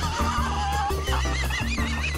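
Background music with a steady bass line, and a high wavering tone with a slow vibrato over its second half.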